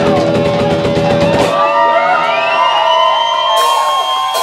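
Heavy metal band playing live with distorted electric guitars and drum kit; about a second and a half in the drums and low end drop out and the guitars ring on alone, with notes sliding up and down in pitch and one high note held.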